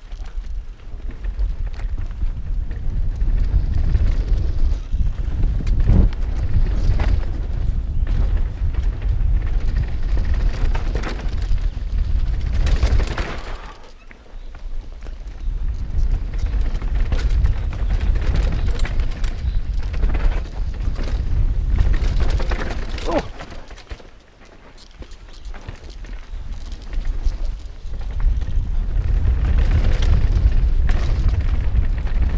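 Wind buffeting a helmet-mounted camera during a fast mountain-bike descent on a dirt trail, with scattered knocks and rattles from the bike over bumps. The rush drops away twice, around 14 and 24 seconds in, as the bike slows.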